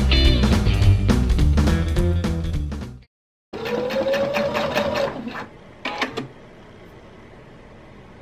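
Background guitar music with a steady beat cuts off suddenly about three seconds in. Then a domestic sewing machine runs briefly, stitching through layers of dress fabric, its motor pitch rising and falling with speed, and stops. A low hum and a couple of faint clicks follow.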